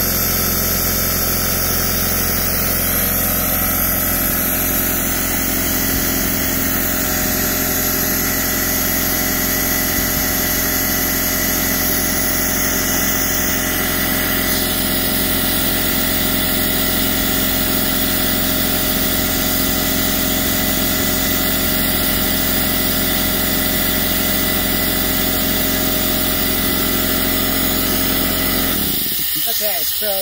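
Wet/dry shop vacuum motor running steadily, sucking the water out of a camper's hot water tank through a hose to winterize it; the motor cuts off near the end.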